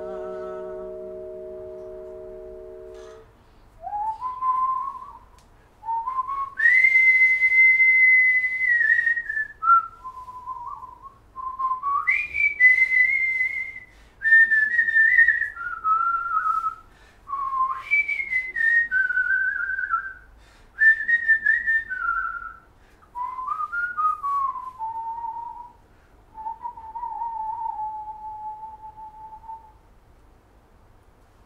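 A vibraphone chord rings out and fades over the first three seconds. Then a man whistles a melody in short phrases with brief breaks between them, holding one long high note early on and ending on a long, lower, level note.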